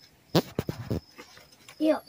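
A quick cluster of rustles and sharp clicks, starting about a third of a second in and lasting under a second: hands pushing through the leaves and stems of a bush to grab a grasshopper.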